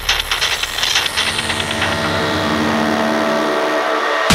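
Industrial techno breakdown: the kick drum and bass drop out, the high percussion fades away about halfway through, and a noisy, grainy synth texture with a held chord carries on underneath.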